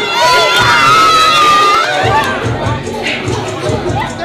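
A party crowd shouting and cheering together over loud music with a bass beat. The group yell is held for about the first two seconds, and the music's beat carries on beneath.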